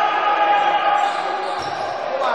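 Handball game sounds in a sports hall: a ball bouncing on the court, with voices of players and spectators calling out.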